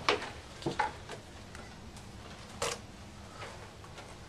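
Quiet room with a few soft clicks and rustles of handling, the sharpest about two and a half seconds in.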